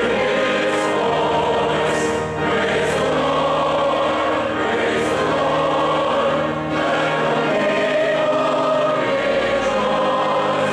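A congregation and worship team singing a hymn together, many voices in unison with instrumental accompaniment holding low bass notes, the chords changing twice.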